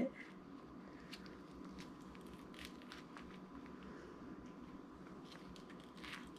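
Faint, sparse clicks and squishes of rubber-gloved hands pulling clumped wet hair and slime off a bathroom sink drain stopper, over a low steady hum.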